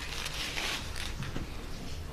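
Faint rustling and crackling handling noises over a low, steady background rumble.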